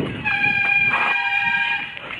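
Bicycle brakes squealing with a steady, high-pitched multi-tone squeal as the bike slows coming off the path onto the lane.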